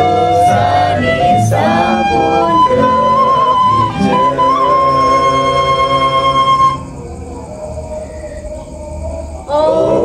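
Devotional song in Balinese style: a woman singing over a small band of bamboo flute, acoustic guitar, box drum and metallophone, with a long held flute note in the middle. About seven seconds in the band stops and the last notes ring out quietly, then several voices begin singing together near the end.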